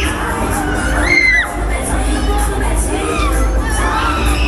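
Riders on a Breakdance spinning ride screaming as the cars whirl round, several high drawn-out screams, the loudest about a second in, over fairground ride music and a steady low rumble.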